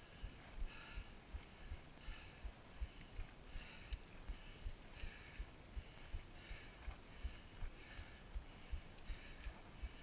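Mountain bike riding over a gravel dirt road, picked up by a handlebar-mounted camera: a dense run of short low knocks, several each second, from the bumps of the gravel, over a faint steady hiss.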